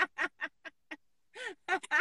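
Women laughing over a video call: a run of short, quick bursts of laughter, a brief pause about a second in, then more laughter.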